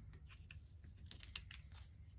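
Faint clicks and taps of cards being picked up off a tabletop and gathered into a hand, several small snaps over about two seconds.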